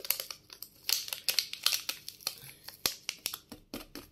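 A small plastic sachet crinkling and crackling as it is handled and torn open: a quick, irregular run of crisp crackles.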